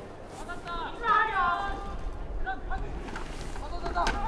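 Distant shouted voices on an open football field just before the snap: a few calls about a second in and a short one past the middle, over a steady low outdoor rumble.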